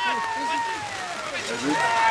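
A voice calling out one long drawn-out shout, its pitch sliding slowly down over about a second and a half, with fainter voices around it; another call starts near the end.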